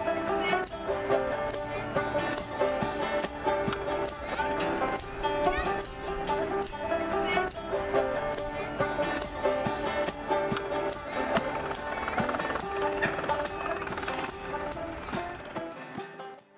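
Acoustic band music: plucked-string notes over a steady percussive rattle on the beat, about two a second. It fades out near the end.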